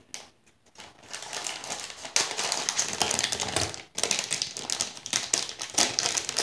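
Rapid clicking and crinkling of plastic and foil packaging being handled and broken apart, starting about two seconds in after a brief near-silent moment.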